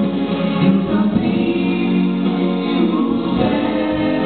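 A vocal trio, two men and a woman, singing a Portuguese gospel song in harmony through microphones, holding long notes.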